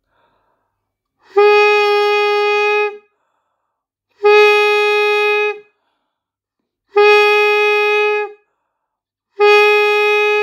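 Saxophone mouthpiece and reed blown on the neck alone, without the body of the instrument: four long, steady notes, all on the same pitch and each lasting about a second and a half, with short silences between them.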